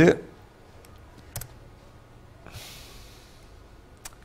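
Quiet room tone with a single sharp click from a laptop about a second and a half in, and a short soft hiss of breath a second later, after the tail end of a short word at the very start.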